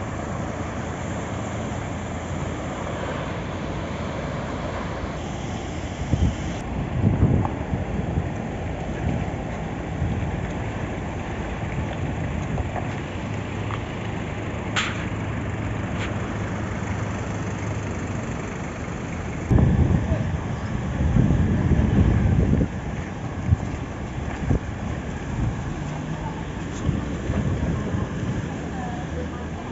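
Floodwater rushing in a street, a steady noisy wash, with wind gusting on the phone microphone twice for a few seconds.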